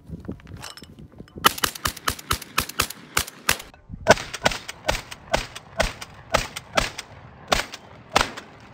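A shotgun fired rapidly at clay targets thrown into the air: a quick string of sharp shots, a pause of about half a second, then more shots spaced roughly half a second apart.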